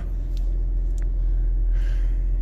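Car engine idling with a steady low rumble, heard from inside the cabin, with a couple of faint ticks.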